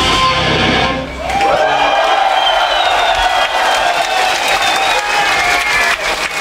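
Live metal band with electric guitars and drums playing loud until about a second in, when the song stops; a single high electric guitar tone then rises and is held for about four seconds over crowd cheering.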